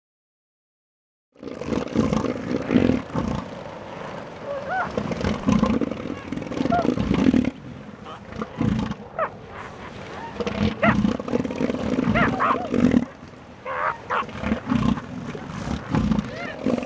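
Bull elephant seals fighting in the surf, calling loudly in pulses, with water splashing around them. The sound starts after about a second of silence.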